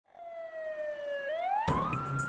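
Fire engine siren wailing: one tone that sinks slowly at first, then sweeps up steeply in the last moments. Background noise comes in near the end.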